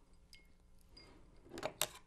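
Quiet handling of a cocktail glass and citrus garnish: a few faint ticks, then two sharp little clicks close together near the end.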